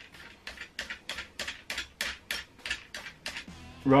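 A ratchet wrench clicking rapidly and evenly, about five or six clicks a second, as it winds a nut along the threaded bar of a homemade swingarm spindle extractor. The clicking stops shortly before the end, over quiet background music.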